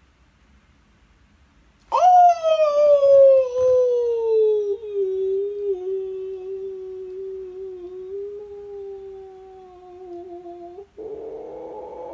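A man howls once, a long drawn-out howl of excitement. It starts suddenly about two seconds in, jumps up in pitch, then slides slowly down and holds a low steady note for about nine seconds. Near the end it breaks into a rougher sound.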